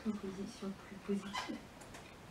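Faint, quiet speech: a voice talking well away from the microphone, fading out in the second half.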